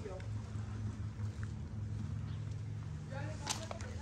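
Faint voices of people talking, heard briefly about three seconds in, over a steady low hum. A single sharp click sounds near the end.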